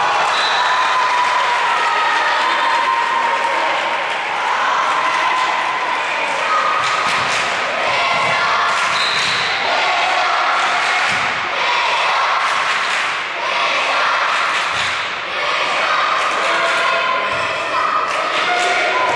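Volleyball match play in a large echoing sports hall: repeated ball strikes and thuds over continuous shouting and chatter from players and spectators.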